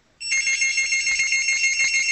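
A telephone-style incoming-call ring: a few high tones pulsing rapidly together, starting a moment in and lasting about two seconds.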